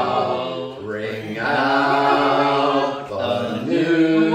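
A church congregation of men and women singing a hymn without instruments, in parts, on long held notes with short breaks between phrases.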